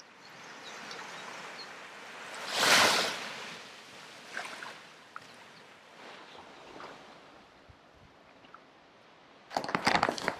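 Small waves washing onto a sandy beach, a soft, even rush that swells to one stronger surge about three seconds in and then fades back into quieter washes.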